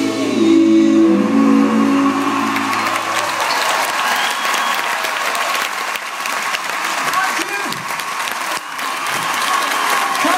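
A live rock band's final chord rings out for about three seconds and dies away, then the theatre audience applauds for the rest of the time.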